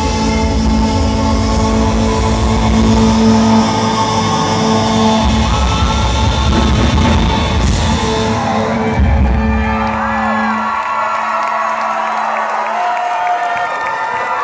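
Live rock band with violins, cello, electric guitars and drums playing loudly, with long held string notes over a heavy bass and drum beat. About ten seconds in, the drums and bass drop away, leaving the held notes ringing with wavering voices from the crowd.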